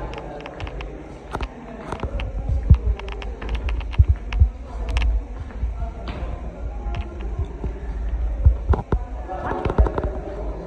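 Irregular clicks and low thumps from footsteps on a stone floor and from handling the phone while walking, over a low rumble, with faint voices in the background.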